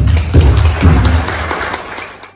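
Audience applauding, with background music underneath.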